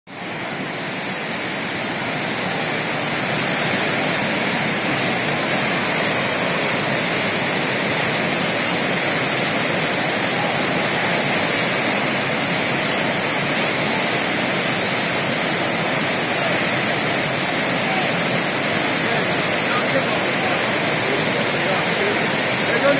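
Muddy floodwater rushing through a river channel, a steady full-bodied rush of water that swells over the first few seconds and then holds.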